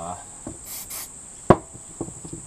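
Two short hisses of an aerosol brake-cleaner spray on an aluminium piston, then a sharp knock, the loudest sound, as the can is set down on the workbench. A steady high cricket chirr runs underneath.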